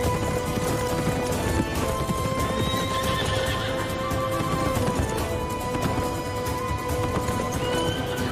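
Hoofbeats of several horses galloping together in a rapid, continuous drumming, with a horse whinnying about two and a half seconds in, over dramatic orchestral music with long held notes.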